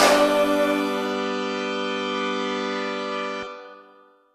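Music: the final held chord of a song rings on steadily, then fades out to silence near the end.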